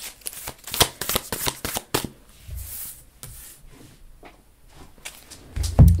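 Tarot cards being shuffled by hand: a quick run of crisp card clicks in the first two seconds, then softer, sparser handling. A dull thump just before the end.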